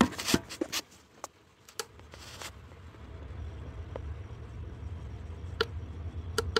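Several sharp clicks and taps of hands handling the meter panel, bunched in the first second and again near the end. Under them a low rumble comes up about two seconds in and slowly grows louder.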